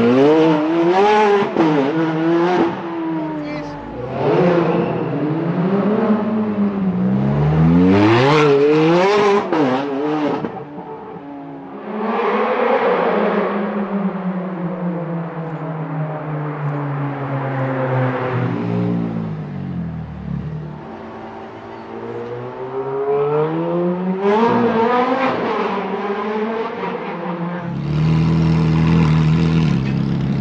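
Ferrari 430 Scuderia's 4.3-litre V8 running hard, its note climbing under acceleration and dropping back again several times, with a long falling run about halfway through.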